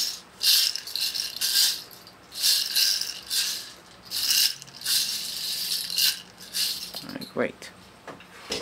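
A handheld rattle shaken in a string of short bursts with brief gaps, used as the test sound in a hearing check.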